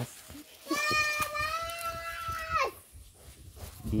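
Water buffalo calf giving one long, steady, high-pitched call of about two seconds that drops in pitch at the end, answering to its name being called.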